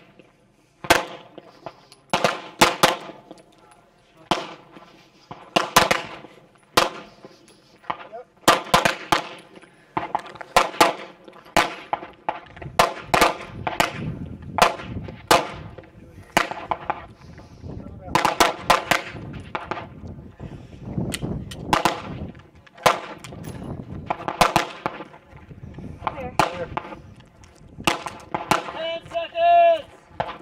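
Gunfire from several shooters firing at once: sharp shots at irregular spacing, often two or three in quick succession, each with a ringing tail.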